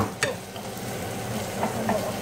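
Tomatoes sizzling as they sauté in a pot, stirred with a wooden spoon. There are two sharp clacks at the start and a couple of light knocks near the end.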